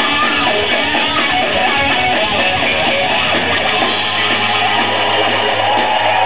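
A live rock band playing loud, with electric guitars strumming over bass and drums. About four seconds in, the pulsing beat stops and the band holds a sustained low note.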